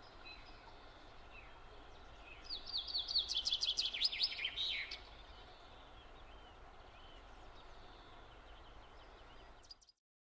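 A songbird sings one fast run of short, high notes that step down in pitch, lasting about two and a half seconds, a couple of seconds in. Faint scattered chirps and a quiet background fill the rest.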